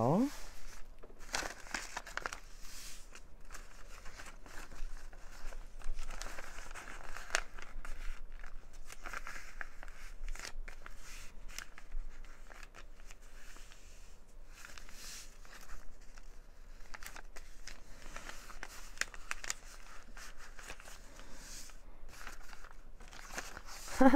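Paper rustling and crinkling as hands press flat, open and fold an envelope document holder made of paper, in many short, irregular rustles.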